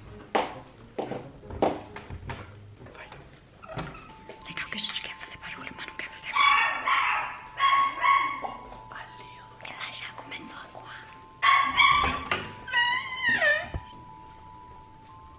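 A dog whining and yelping in several long, high calls, the last rising and falling in pitch, over whispering and laughter, with a steady high tone behind.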